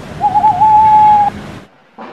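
Owl hooting: one long call of about a second, wavering at first and then held steady. It sits over outdoor background noise that cuts off suddenly near the end.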